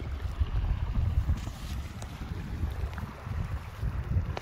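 Wind rumbling on the phone's microphone, with faint water sounds around the kayak.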